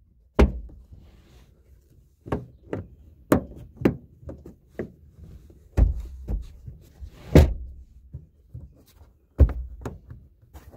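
About ten sharp, irregularly spaced plastic knocks and clunks as trim pieces are pushed and fitted into holes in a car's rear parcel shelf, the loudest about seven and a half seconds in.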